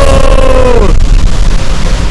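A man's shout held as a long drawn-out "go-o" that falls away about a second in, over strong wind buffeting the microphone, which goes on alone to the end.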